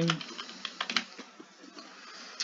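Typing on a computer keyboard: a quick run of keystrokes.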